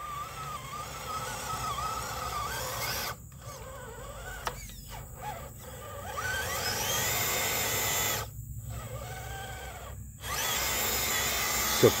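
Redcat Gen8 V2 RC crawler's brushed Holmes Hobbies Trailmaster 27-turn motor and geartrain whining under load on a 3S battery as it drags a loaded trailer through mud. The pitch rises and falls with the throttle and climbs about halfway through. The whine cuts out briefly three times, near a quarter of the way in and twice near the end.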